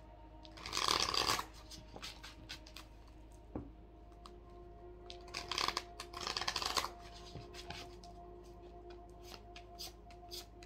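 A deck of tarot cards being shuffled by hand, in two bursts of rustling about a second in and again around five to seven seconds, with small card taps and clicks between them.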